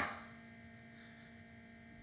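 Near silence with a faint, steady electrical hum in the recording.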